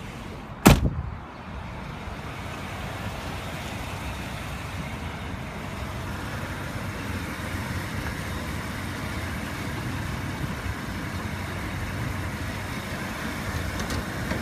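A sharp click about a second in as the hood release is pulled, then the 1994 Buick Roadmaster's LT1 V8 idling steadily.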